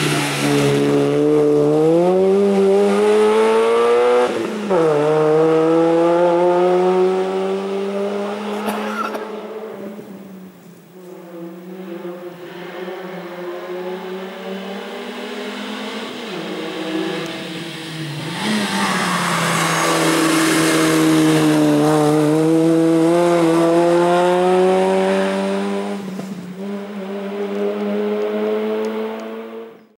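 Peugeot 106 hill-climb car's four-cylinder engine revving hard as it accelerates uphill, the pitch climbing and then dropping sharply at each upshift. It fades for a while, then a second hard run comes in loud, with another upshift near the end.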